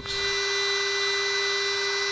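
Handheld hot-air heat gun running steadily, its fan motor giving an even hum with a rush of air as it shrinks heat-shrink tubing onto a wire.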